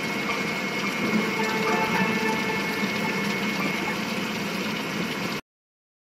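The track's backing sound running on without vocals: a steady hiss with a faint high tone and no clear beat. It cuts off suddenly about five seconds in, into silence as the recording ends.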